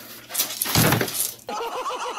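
A loud crash of something falling and breaking, lasting about a second. Halfway through, music with a bouncing beat cuts in abruptly.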